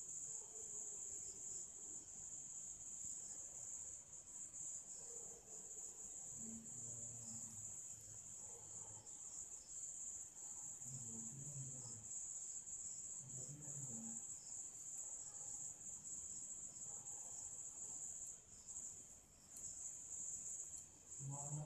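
A faint, steady, high-pitched insect trill, like a cricket's, runs throughout. A faint low murmur comes and goes in the background partway through.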